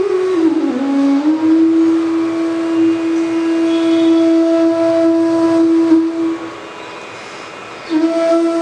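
Bansuri (bamboo flute) playing a slow phrase in Raag Bhupali: a few gliding notes, then one long held note for about five seconds that breaks off about six seconds in. A faint steady drone carries on through the short pause, and the flute comes back in at the end.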